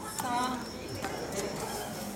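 A short high voice calls out about a quarter second in, among a few sharp hollow knocks of wooden practice staffs.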